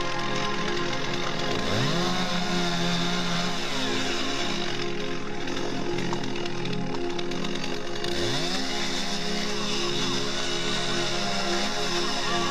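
Gas chainsaw revving up to cutting speed about two seconds in, dropping back, and revving up again about eight seconds in, heard under background music.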